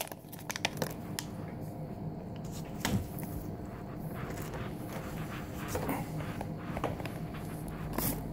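A plastic treat wrapper crinkling in gloved hands, with a few sharp rustles and clicks in the first second and another about three seconds in, then faint room tone.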